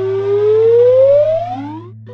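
A cartoon sound effect: one whistle-like tone gliding steadily upward in pitch for about two seconds, over a steady low hum.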